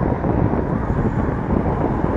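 Wind buffeting the camera microphone while riding an electric scooter along a road, a steady low rush of noise that swells and eases slightly.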